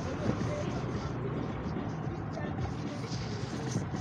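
Steady running noise of a moving motor vehicle, with engine hum and road and wind noise on a phone microphone.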